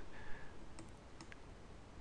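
A few faint computer-mouse clicks, short and sharp, about a second in, over quiet room tone.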